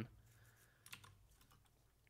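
A few faint computer keyboard keystrokes, clustered about a second in, against near silence.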